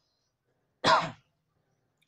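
A man clearing his throat once, briefly, about a second in, the sound falling in pitch.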